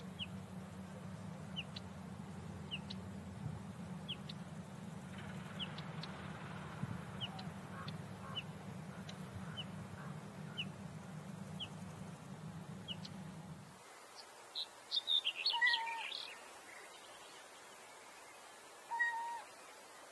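A small bird chirps repeatedly, short high notes about once or twice a second, over a low steady hum. About fourteen seconds in, the hum stops and a louder bird calls in a quick run of notes, with one shorter call near the end.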